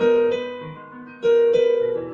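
Piano playing a short improvised fill in the gap between sung vocal lines: notes struck at the start and again about a second and a quarter in, each ringing and fading. It is the piano answering the voice in a call-and-response accompaniment.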